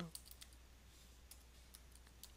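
Faint, irregular keystroke clicks of a computer keyboard being typed on, a handful of taps over a low steady hum.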